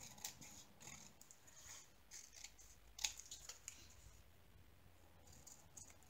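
A handful of faint snips from scissors cutting a strip of paper sticker labels, the sharpest about three seconds in.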